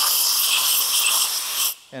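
Compressed air hissing from a blowgun nozzle blown in under a rubber handlebar grip, floating the grip so it slides onto the bar. The hiss is steady and pretty noisy, and it cuts off suddenly near the end as the air is shut off.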